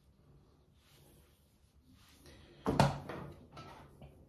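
Handling of a hair curling iron: one sharp plastic knock about two-thirds of the way in, then a few lighter clicks and rustles as the iron is picked up and clamped onto a strand of hair.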